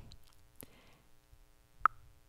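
A single short, bright electronic blip near the end, the app's sound effect as a memory card flips over in the matching game, over a faint steady tone; a faint click comes about a quarter of the way in.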